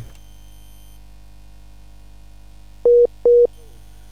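Two short electronic beeps at one steady pitch, close together about three seconds in, over a steady low mains hum.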